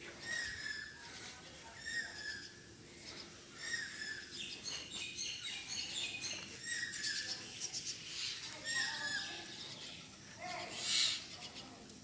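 Birds calling outdoors: a short call that slides down in pitch repeats every second or two, with higher chirps in between, and a louder call comes near the end.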